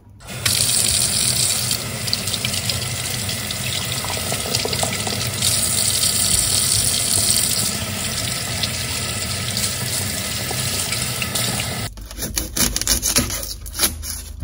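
Kitchen tap running steadily onto leeks held under the stream over the sink. It starts about half a second in and stops abruptly near the end, followed by a few short clicks and taps.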